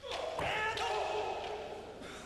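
A kendoist's kiai, one long high-pitched shout that fades out near the end, with a single sharp knock about half a second in.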